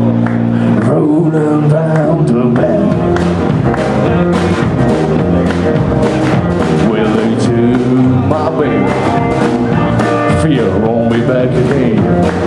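A live blues band playing: electric guitar, electric bass and drum kit together in a steady groove.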